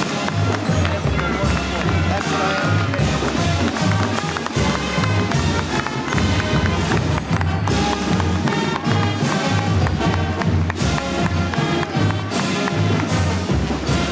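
Loud band music with brass and a steady beat, with crowd voices underneath.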